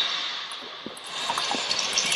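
Table tennis balls being struck and bouncing on the table in a fast multi-ball drill, a quick irregular series of sharp clicks. Under them runs a steady rushing noise: background noise played into the hall on purpose as anti-interference training.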